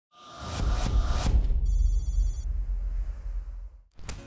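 Intro sound effect: a deep rumbling hit with a few sharp impacts, then a short, high, trilling ring about a second and a half in, all fading out before the speech begins.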